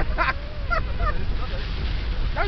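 A person laughing, a few short voiced bursts in the first second, over the steady low rumble of a moving car.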